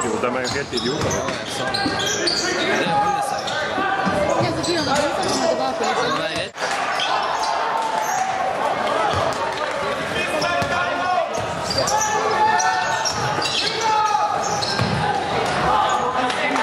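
Basketball game sound in a gym: a ball bouncing on the court amid a steady mix of players' and spectators' voices.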